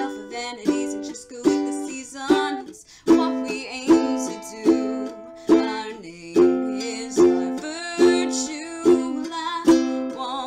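Tenor ukulele strummed in a steady rhythm, a strong accented strum about every 0.8 seconds, with a brief break about three seconds in.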